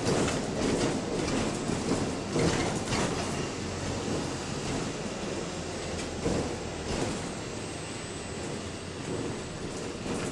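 Cabin noise of a double-decker bus on the move: a steady rumble of engine and road, with the body and fittings knocking and rattling several times.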